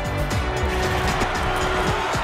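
News-bulletin transition theme music with swooshing sound effects, repeated sweeps falling in pitch over sustained musical tones.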